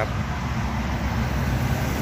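Mitsubishi Triton pickup's engine idling: a steady low rumble.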